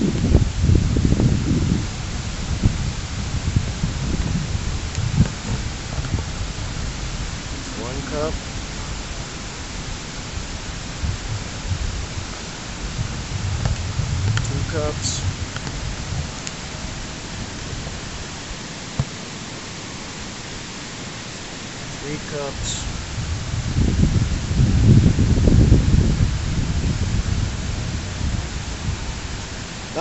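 Steady, even hiss of outdoor noise with low rumbling swells near the start and again about 24 seconds in, and faint voices now and then.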